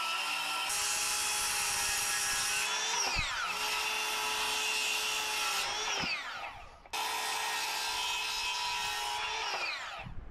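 Ryobi circular saw cutting a wooden board in runs, its motor whining over the rasp of the blade in the wood. The whine falls each time the trigger is let go: a short dip about three seconds in, a spin-down about six seconds in with a moment's lull, a sudden restart at seven seconds, and a last spin-down near the end.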